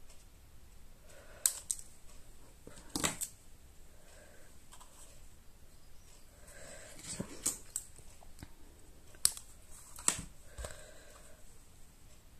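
Scissors snipping a thin strip cut from the edge of a sheet of foam adhesive dimensionals: a handful of short sharp snips a few seconds apart, with light handling of the small pieces between them.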